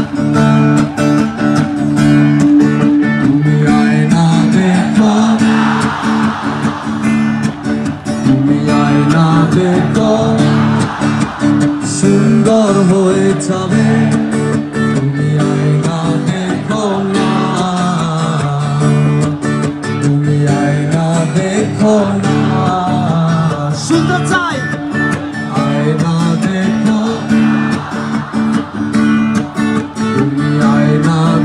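Live rock band playing a song, guitars to the fore, with singing.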